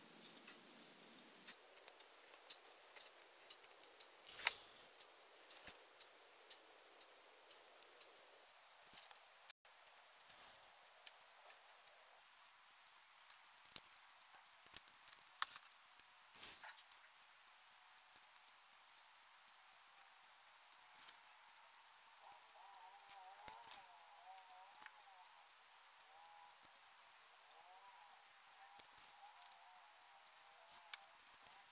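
Near silence broken by scattered faint clicks and rustles of a thin plastic jelly cup and yarn being handled.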